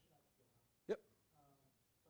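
A single short, sharp vocal sound close to the microphone, hiccup-like, about a second in, standing out loud against faint, distant off-microphone speech.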